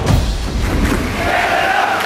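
Intro sting music with heavy drum beats, giving way about a second in to the sound of a crowd cheering and chanting.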